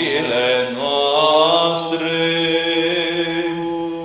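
Romanian Orthodox Byzantine chant from Matins in tone 7. A sung line rises about a second in and then holds one long melismatic note over a steady low drone (the ison).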